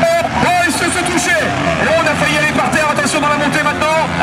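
Motocross motorcycle engines revving up and down as riders race through a dirt corner, with a man's commentary over them.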